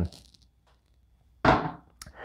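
A single wooden thunk about one and a half seconds in, fading quickly: a glass whisky bottle set down on a wooden surface.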